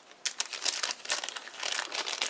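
Thin clear plastic film crinkling and crackling in the hands as it is handled, a quick irregular run of sharp crackles.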